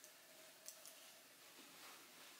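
Near silence: room tone with a faint steady hum and two short faint clicks a little under a second in.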